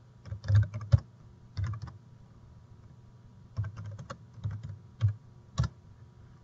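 Typing on a computer keyboard: several short bursts of keystrokes as a terminal command is entered.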